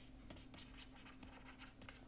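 Faint scratching and tapping of a stylus writing in short strokes on a pen tablet or touchscreen.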